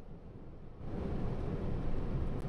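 Low, steady rumble of vehicle and road noise on a wet freeway, with a faint hiss that picks up about a second in.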